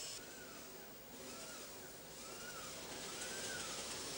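Faint factory background: a steady hiss with a short whine that rises and falls in pitch, repeating four times about a second apart.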